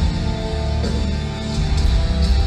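Metal band playing live: electric guitars holding chords over heavy bass and drums, with a chord change a little under a second in. The sound is a crowd recording of a concert hall PA.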